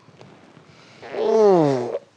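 A person's drawn-out yawn or waking sigh, one long sound falling steadily in pitch, starting about halfway through.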